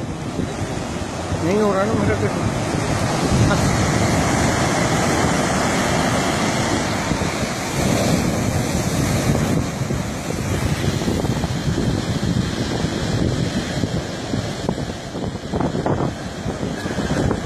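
Sea surf breaking and washing up a sandy beach, swelling as each wave comes in, with wind buffeting the microphone.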